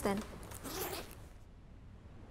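A zipper pulled once on a school bag, a short rasp lasting under a second, starting about half a second in.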